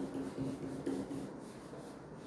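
A whiteboard eraser wiping across a whiteboard in back-and-forth strokes, loudest in the first second and fading after it.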